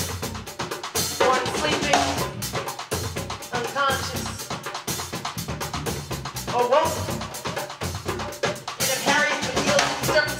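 Live jazz with a busy drum kit playing throughout, snare and rimshot hits over bass drum. A woman's voice comes in over it in a few short phrases into a microphone.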